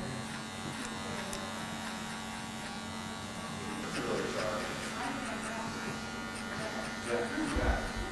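Electric hair clippers running with a steady hum while cutting a fade.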